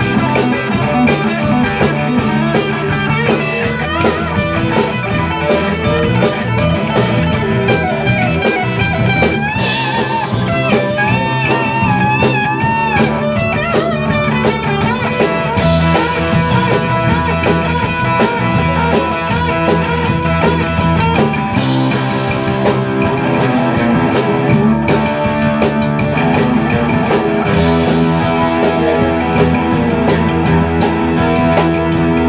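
Live rock band playing, with a drum kit keeping a steady beat of cymbal strokes under guitar and other instruments. About ten seconds in, a lead line with bent, wavering notes comes in over the band.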